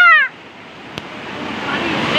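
Rushing floodwater of a swollen river, a steady noisy roar that grows gradually louder, after a voice's falling call cuts off at the very start.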